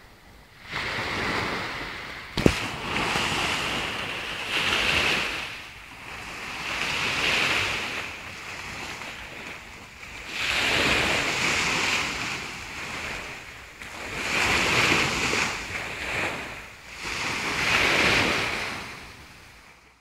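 Small sea waves breaking and washing up a beach, swelling and fading every few seconds. A single sharp knock about two and a half seconds in.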